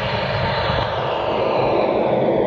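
Steady rushing, jet-engine-like noise from the routine's soundtrack, a sound effect after the music ends.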